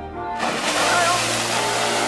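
Geyser, most likely Strokkur, bursting into eruption: a sudden loud rush of water and steam breaks out about half a second in and keeps going.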